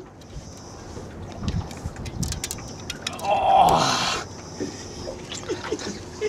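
Water splashing and sloshing against the side of a boat, with scattered short knocks and a louder splashy rush lasting about a second, about three seconds in.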